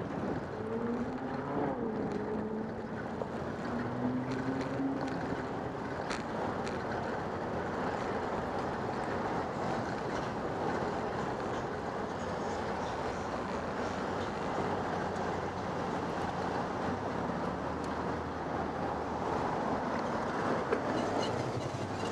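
Street traffic and wind on the microphone of a moving bicycle's camera: a steady rush of noise, with a wavering gliding tone in the first few seconds and a vehicle passing close near the end.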